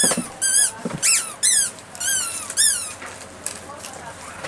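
A small animal's high-pitched squeaky calls, about two a second, each rising and then falling in pitch, dying away after about three seconds.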